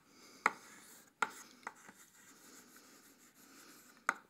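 Chalk writing on a chalkboard: three sharp taps in the first two seconds as the chalk strikes the board, then softer scratching strokes as the letters are drawn.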